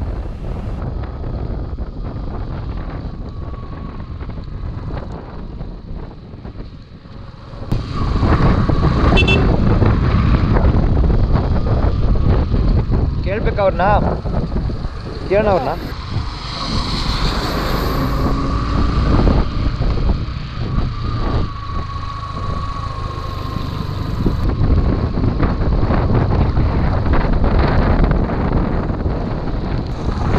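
Motorcycle riding on a wet road: wind rushing over the camera microphone over the engine and tyre noise, getting louder about eight seconds in. A couple of brief wavering tones come through around the middle.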